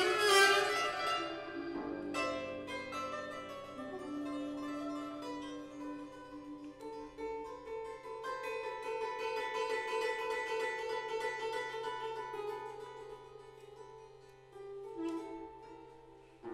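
Improvised duet of a concert harp and a small wind instrument: long held wind notes over plucked harp strings. It is loudest at the start and fades in the last few seconds, with a few more harp plucks near the end.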